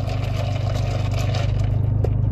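A steady low hum inside a car's cabin, typical of the engine idling, with a fainter rushing noise over it.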